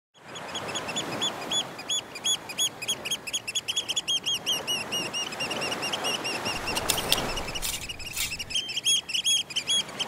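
Beach ambience: many birds chirping in quick, short, arched calls over a steady rushing wash of surf.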